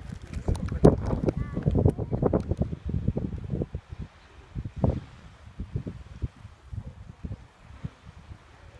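Wind buffeting a handheld phone's microphone in irregular gusts, with rustle and knocks, heaviest in the first half and with one more surge about five seconds in.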